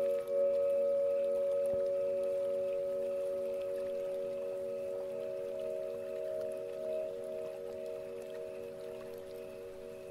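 Singing bowls ringing as meditation background: several steady, low-pitched tones sound together, each pulsing with a slow wobble, the whole slowly fading over the seconds.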